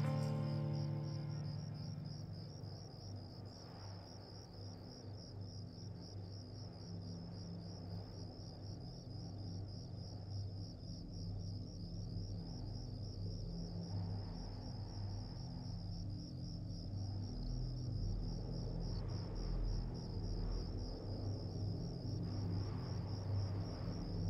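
The song's last notes fade out in the first couple of seconds, leaving crickets chirping in a steady, continuous high trill over a low droning hum.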